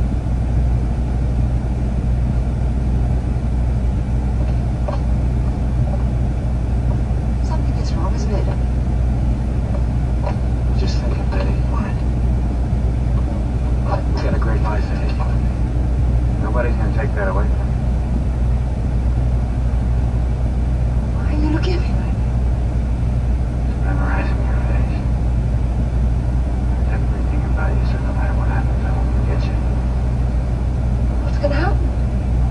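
Steady low drone of an idling semi-truck engine heard inside the cab, with faint film dialogue coming from a small screen's speaker in short snatches.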